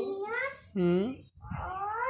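A young child's high-pitched, wordless vocal sounds: several short drawn-out cries that slide up and down in pitch, with a brief pause about two-thirds of the way through.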